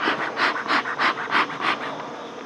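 Bee smoker's bellows pumped six times in quick succession, about three puffs a second, each a short puff of air pushing smoke out at the hive.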